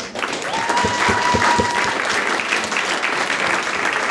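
Audience applauding steadily. About half a second in, a steady high tone sounds through the clapping for over a second.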